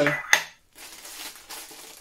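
A single sharp metallic clink about a third of a second in, as the metal lid of a Funko Soda can is set down on a table, followed by faint crinkling of the plastic bag wrapped around the figure.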